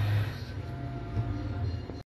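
A steady low hum with a faint higher tone, cut off suddenly at the end.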